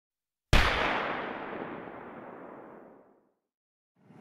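A single boom-like impact sound effect: one sudden hit about half a second in, with a long tail that dies away over nearly three seconds, the high end fading first.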